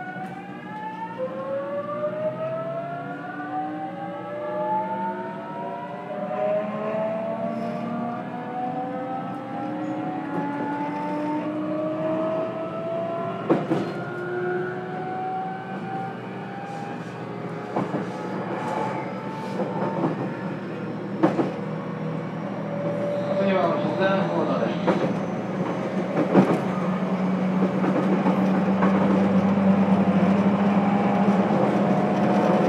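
JR Kyushu 813 series electric train heard from inside its motor car KuMoHa 813-204. The traction inverter and motors whine in several tones that climb in pitch together as the train accelerates, with sharp clicks from the wheels over rail joints. By the end the sound has settled into a steady running hum.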